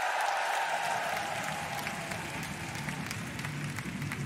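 Large concert audience applauding, loudest at the start and easing off slightly.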